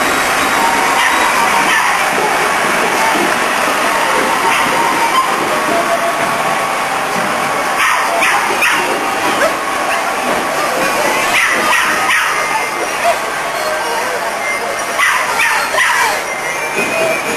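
Crowd noise along a street procession: a steady din of voices, with clusters of short, sharp cries about halfway through, again a little later, and near the end.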